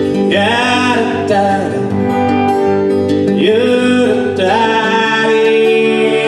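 A live folk band plays a passage between verses: acoustic guitar strumming with violin. A lead melody slides up into a long held phrase twice.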